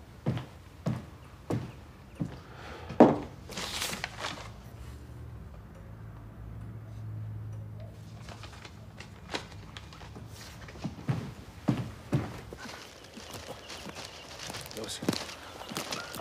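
People walking over leaf litter and twigs on a forest floor: short crunching footsteps about every half second, with a louder crunch about three seconds in. In the middle the steps fall away and a low steady hum is left, and irregular steps come back after about nine seconds.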